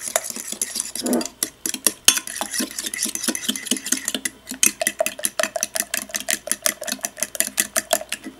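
A fork stirring beaten eggs and sugar in a glass measuring cup, its tines clicking quickly against the glass. The strokes become faster and more even, about six a second, in the second half.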